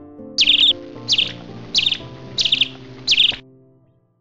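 Five short, high bird chirps, each a quick falling call, repeating evenly about every 0.7 s over soft background music. The music fades out near the end.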